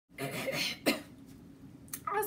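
A woman clearing her throat: a rasping stretch ends in one sharp, cough-like burst just under a second in.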